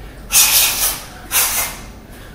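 Two sharp, hissing exhalations from a boxer breathing out with his punches while working the slip bag, the first a little after the start and the second about halfway through.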